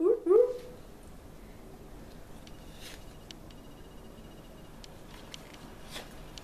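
A dog whining in short rising yelps, two quick ones right at the start. A few faint light clicks follow later.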